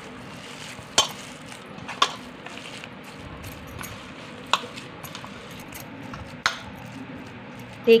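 Hand kneading minced chicken in a stainless steel bowl: a soft, steady mixing noise broken by four sharp clinks against the bowl, about one, two, four and a half and six and a half seconds in.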